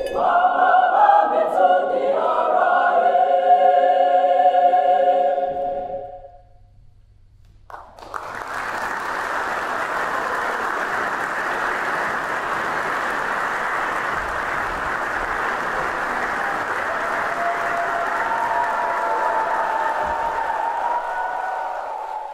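Mixed-voice choir singing, ending on a held final chord that dies away about six seconds in. After a short gap, audience applause starts and keeps up steadily.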